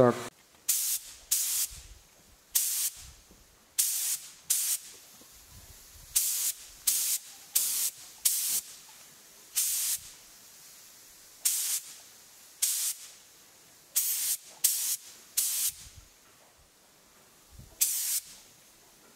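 Compressed air hissing from a hand-held air gun on a compressor hose, let off in about seventeen short, irregular blasts, each under half a second.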